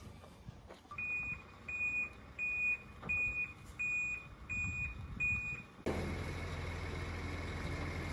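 A tipper lorry's reversing alarm beeps seven times, evenly about 0.7 s apart, as the lorry backs up. About six seconds in, the sound switches abruptly to the lorry's diesel engine running steadily while it tips its load of topsoil.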